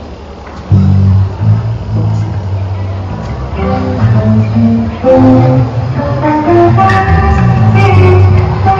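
A live band's amplified instruments start up: loud, sustained low bass notes come in just under a second in, and guitar notes join them about halfway through.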